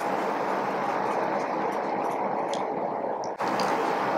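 Steady background hiss that starts abruptly, like the room and microphone noise of a newly started recording, with a brief dropout about three and a half seconds in.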